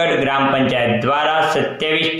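A man speaking continuously in Gujarati, with no pause.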